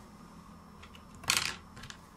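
Hands handling small parts and a tool on a work desk: a few light clicks and one short rustling clatter about a second and a half in.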